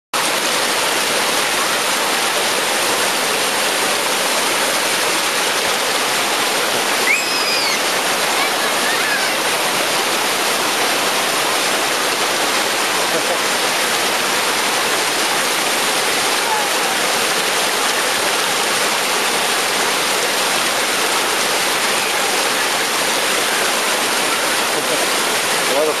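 Whitewater of Khone Phapheng Falls on the Mekong River rushing over rock ledges: a loud, steady, even rush of falling and churning water.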